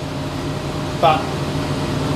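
Steady mechanical hum, with a man saying a single word about a second in.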